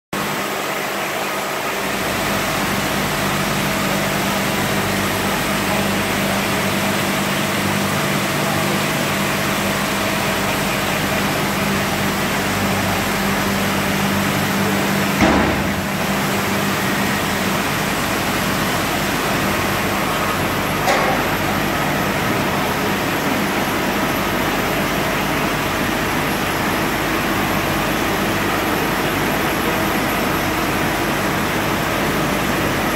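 Steady mechanical hum and whir of a Mark Andy 2200 flexo label press running on the print floor. A short knock comes about fifteen seconds in, after which the low hum eases, and a smaller one follows about six seconds later.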